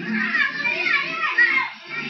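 Several children's voices shouting and calling out excitedly, overlapping, while they play.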